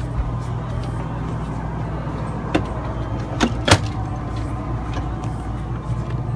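A steady low hum, with a few sharp clicks and knocks about halfway through as the RV's entry door is unlatched and pushed open.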